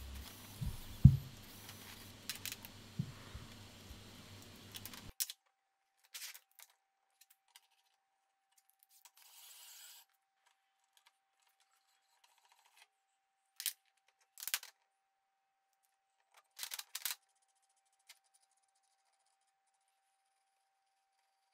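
Scattered metallic clicks and clinks of steel tools and parts being handled, with a louder low knock about a second in. After about five seconds it is mostly quiet between a few isolated clicks.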